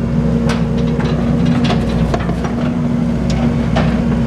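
A machine engine running steadily at a constant speed, with a few sharp knocks over it.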